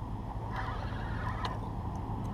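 Spinning reel being wound in to bring a hooked fish close, under a steady low rumble.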